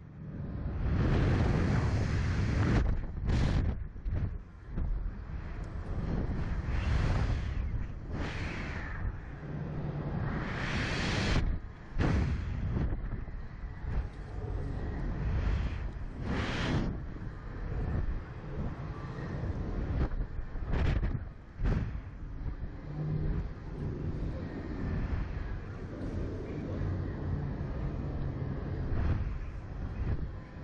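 Wind rushing over the microphone of the onboard camera of a slingshot (reverse-bungee) ride capsule, loudest in the first few seconds and then coming in repeated rushes as the capsule bounces and swings.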